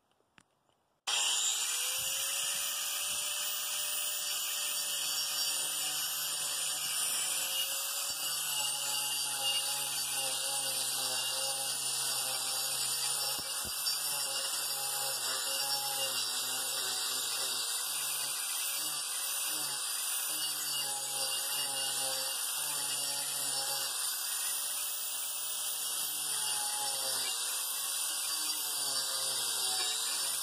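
Angle grinder fitted with a 24-grit carbide disc starting up about a second in and running steadily as it grinds down the high spots on a rough chainsaw-cut wooden board, its pitch dipping now and then as the disc bites into the wood.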